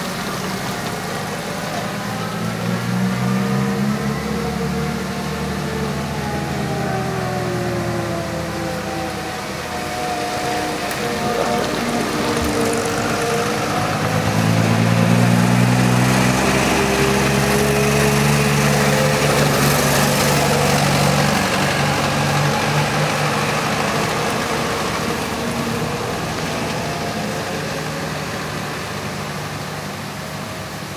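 Vintage 1920s–30s touring cars driving past one after another, their engines' pitch rising and falling. The engine sound swells twice, loudest about halfway through as the next cars come close, then fades as a car pulls away round the bend.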